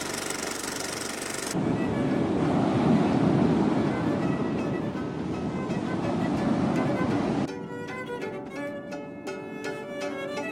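A dense rushing noise, loudest in the middle, gives way about seven and a half seconds in to string music with plucked notes and a bowed violin line.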